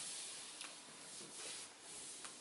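A hand rubbing over a large sheet of drawing paper hung on a wall: a faint, soft rustle that swells and fades a few times.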